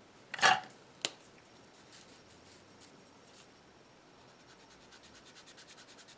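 Alcohol brush-tip marker (Prismacolor) rubbing on paper as a swatch is coloured in, heard as a series of quick faint scratchy strokes near the end. A short loud noise and a sharp click come within the first second.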